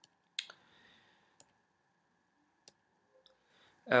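A few short, sharp clicks in an otherwise quiet room, the loudest about half a second in, then fainter single clicks about a second apart.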